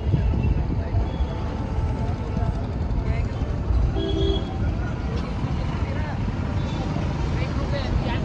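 Car driving slowly through busy street traffic: a steady low engine and road rumble, with a brief short tone about four seconds in.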